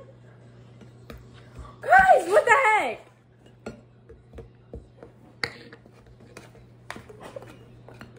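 A spoon clicking and scraping against a glass mixing bowl as dry baking mix is stirred, in scattered short taps. A brief burst of voice about two seconds in.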